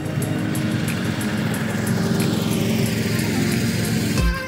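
Walk-behind greens reel mower running as it is pushed close past, engine and cutting reel together. A high whine falls in pitch in the second half as it moves away.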